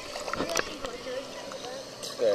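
Pool water lapping and sloshing at a camera held at the surface, with a few small splashes. Children's voices are faint in the background.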